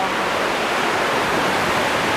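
Steady rush of sea surf washing onto the shore, an even noise with no distinct wave crashes.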